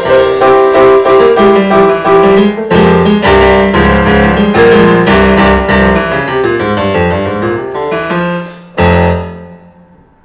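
Digital piano playing improvised music: a busy flow of notes over held bass notes, which ends about nine seconds in with one low chord struck and left to die away.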